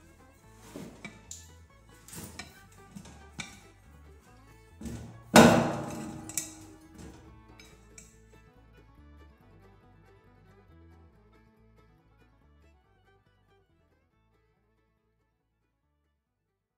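Screwdrivers used as tire levers knocking and clinking against a tiller wheel's steel rim while the tire bead is pried off, with one loud thud and a brief ring about five seconds in. The knocks die away after about eight seconds.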